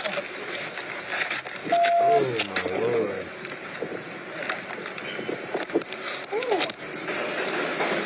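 Body-camera audio at an arrest scene: indistinct voices and scattered knocks over steady background noise, with a short single-pitch beep about two seconds in.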